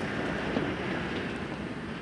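An off-road vehicle driving past on a dusty dirt track: a rush of engine and tyre noise that swells about half a second in, then slowly fades.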